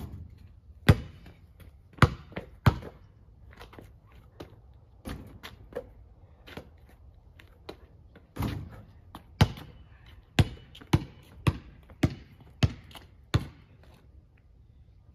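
A basketball bouncing on a driveway: a few bounces near the start after a shot, a heavier hit partway through as another shot reaches the hoop, then steady dribbling at about two bounces a second.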